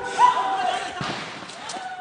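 The tail of a short news transition jingle: a few held musical notes that fade out steadily over the two seconds, with a faint click about a second in.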